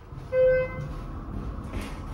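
Schindler hydraulic elevator's cab chime sounds once, a short single tone about half a second in, over the low steady rumble of the car travelling.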